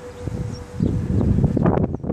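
Wind buffeting a phone microphone in uneven gusts, a low rumble that swells about a second in and grows rougher near the end.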